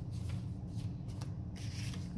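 Paper rustling as greeting cards, envelopes and flyers are handled and sorted: a few short scrapes, then a denser rustle near the end, over a steady low hum.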